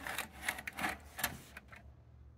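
A MiniDisc being pushed into the slot of a Sony MXD-D3 deck and drawn in by its auto-loading mechanism: a run of about five clicks and clatters over a second and a half.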